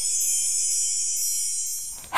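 High chime tones from an intro jingle, several ringing together, held on and fading out near the end.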